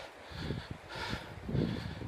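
Faint, uneven footsteps and backpack rustle of a hiker walking on a dirt trail.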